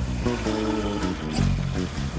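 Background film music led by plucked guitar over a steady low bass.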